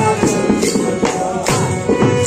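Live Sufi devotional music: a man singing over a harmonium and a plucked long-necked lute, with a sharp percussive strike about twice a second.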